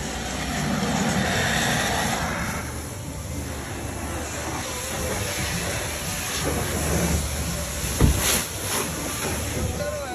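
Water spraying from a car-wash hose, a steady hiss that is a little louder in the first few seconds, with one sharp knock about eight seconds in.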